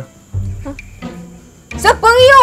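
Soft background music with low bass notes, over a steady high-pitched insect drone. A loud exclaiming voice breaks in near the end.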